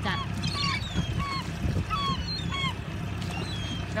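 A flock of gulls calling, many short calls that fall in pitch, several a second and overlapping, as they dive for food around a boat. A boat motor runs with a low, steady hum underneath.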